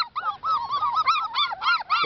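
A litter of six-and-a-half-week-old border collie puppies whining and yipping together: a rapid run of short rising-and-falling cries, several a second and overlapping.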